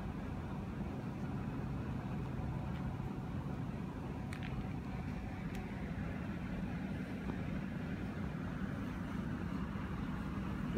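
Steady low rumbling background hum with no speech, and a couple of faint ticks near the middle.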